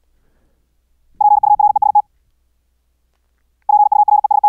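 High-speed Morse code (CW) from the QRQ training program at about 74 words per minute: a clean sine-wave tone regenerated by the sineCW plugin, keyed in two short words of rapid beeps, one about a second in and another starting near the end.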